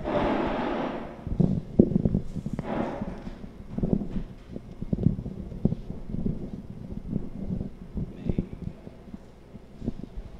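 Handling noise: a short rustle, then a run of irregular knocks and thumps, about one or two a second, as people get up and move about near the microphone.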